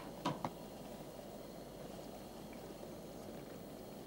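Homemade beef bone stock being poured into a pot of browned onions: a steady, quiet rush of liquid, after a couple of brief clinks about half a second in.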